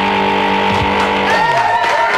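Electronic transition sting: a held synthesizer chord over a whooshing noise. About one and a half seconds in, its low note glides down as new higher tones come in.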